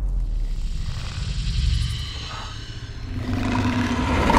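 A low rumble, easing a little past the middle and swelling again near the end, where a faint low steady tone comes in.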